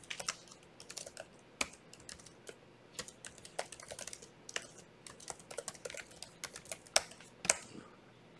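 Typing on a computer keyboard: quick, irregular keystrokes as a name and an email address are entered, with a couple of louder clicks near the end.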